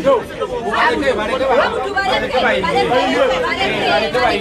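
Only speech: a voice talking continuously and quickly.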